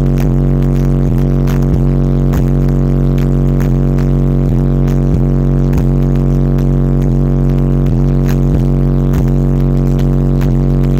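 Six PSI 18-inch car-audio subwoofers in a sealed-up Yukon cabin playing one steady, very loud bass note, heard from inside the cab. A faint click repeats under it a little less than twice a second.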